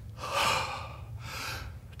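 A man demonstrating deep breathing: one long breath drawn in, then let out, heard as two breathy rushes of air.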